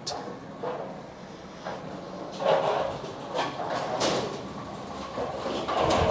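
Bowling-lane machinery rumbling and clunking, with a few heavier thuds in the second half and one sharp knock about four seconds in.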